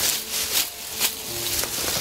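Crackling and rustling of roots, soil and dry leaf litter as a young bush honeysuckle shrub is pulled out of the ground by hand, with faint held music notes underneath.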